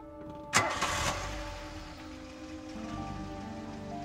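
Film soundtrack music with sustained notes. About half a second in, a car door shuts with a loud thump, followed by a short rush of noise and a low rumble as the car's engine starts.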